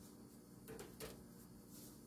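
Near silence: faint room tone with two faint short clicks about a second in, from hands working sourdough with a plastic bench scraper on a silicone mat.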